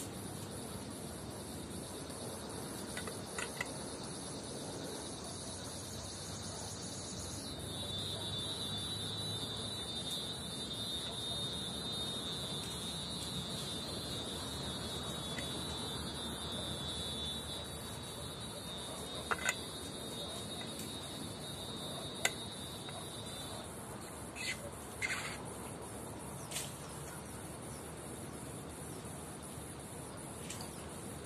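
Insects trilling with a steady, high-pitched buzz that drops slightly in pitch after about seven seconds and stops a few seconds before the end. A few short faint clicks fall in the second half.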